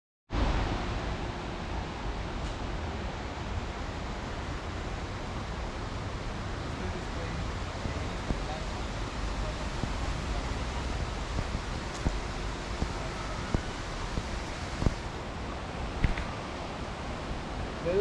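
Steady rushing outdoor background noise, strongest in the bass, with a few sharp clicks in the second half and faint distant voices.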